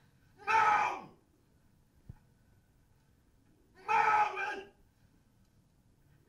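Two loud, wordless yells from a film soundtrack played over theatre speakers, each about half a second long and about three seconds apart, following a run of angry swearing over missing things. A short click falls between them.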